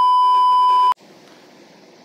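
Loud, steady, high test-tone beep of the kind that goes with TV colour bars, used as an editing effect. It lasts about a second and cuts off suddenly, followed by a faint hiss.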